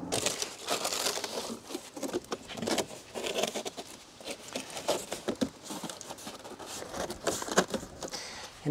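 A sheet of corrugated cardboard being bent along a scored line and handled, giving irregular rustling and crackling.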